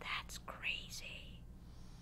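Quiet whispered speech: a few soft, breathy syllables with no voiced tone.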